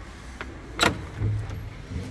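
A sharp metallic click from the brass handle and latch of a heavy wooden door as it is worked, followed a moment later by a short low thump as the door starts to move.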